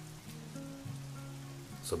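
Steady rain falling, under soft background music holding a few low sustained notes.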